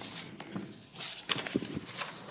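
Scattered light knocks and clicks with paper rustling, from papers and objects being handled at a table microphone.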